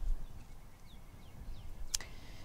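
A few faint bird chirps, then one sharp snip near the end as hand pruners cut through an old bergenia leaf.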